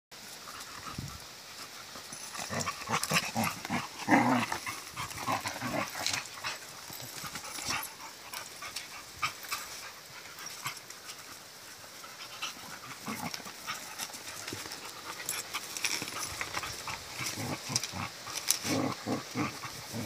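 A rottweiler-mix puppy and its collie-mix mother play-fighting: irregular short bursts of dog noises and scuffling, loudest about four seconds in.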